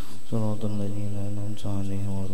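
A man's voice reciting Arabic text through a microphone in a drawn-out chant, holding long, steady notes.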